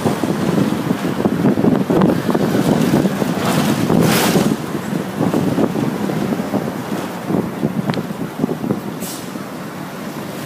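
City bus in motion heard from on board: a steady rumble of engine and road noise with wind buffeting the microphone, and a brief hiss about four seconds in. The noise eases somewhat after about halfway.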